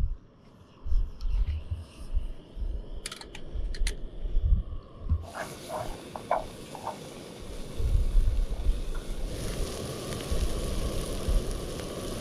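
Butter, shallots and diced butternut squash starting to sizzle in a pot on a gas-fuelled Trangia camping stove. The frying hiss sets in about five seconds in and grows louder a few seconds later, with a few light clicks of the pot being handled. Wind buffets the microphone throughout.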